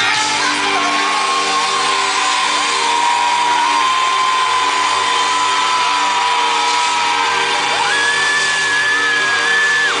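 Live pop-rock band playing in a large hall, with electric guitar and drums under long held high notes; a higher note comes in about eight seconds in and cuts off just before the end. The crowd whoops along.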